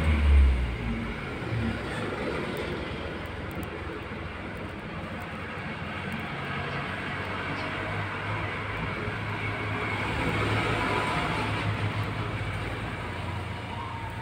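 Steady rumble and hiss of background noise, with a loud low thump at the start. A zebra dove's coo comes in faintly near the end.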